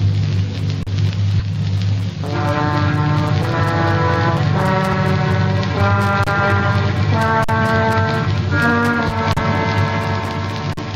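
Studio orchestra playing a radio-drama music bridge. It opens on a low held chord, and from about two seconds in fuller sustained chords come in, moving to a new chord about once a second.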